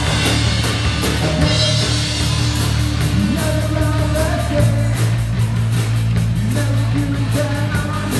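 Live rock band playing: electric guitar, bass guitar and drum kit with sung vocals, at a steady beat.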